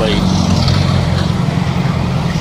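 Street traffic with a steady low engine hum from a vehicle running close by.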